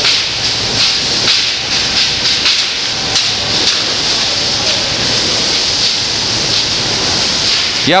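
Dried bay laurel branches being beaten on threshing tables to strip off their leaves: dry leaves rustling and crackling with irregular knocks, over a steady hiss.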